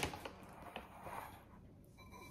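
A few faint clicks of dry cereal and caramel popcorn pieces shifting in a glass bowl as a hand picks through them, mostly in the first second.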